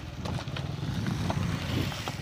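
A vehicle engine running steadily, with a few short scrapes and knocks as soil is shovelled and handled.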